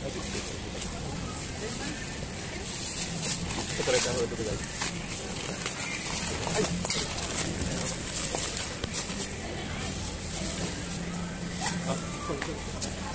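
Thin plastic shopping bags rustling and crinkling as groceries are packed into them, over a steady low hum and store chatter.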